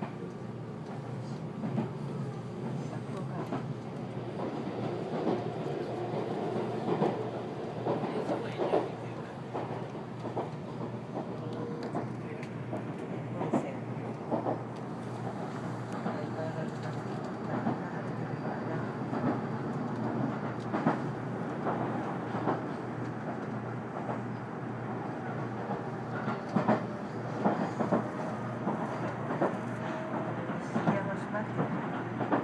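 Running noise inside the passenger cabin of a JR 373 series electric multiple unit on the move. A steady rumble is broken by irregular clicks of the wheels over rail joints.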